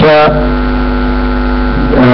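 A steady low hum at one fixed pitch, lasting about a second and a half, starting just after a word ends and stopping as speech resumes.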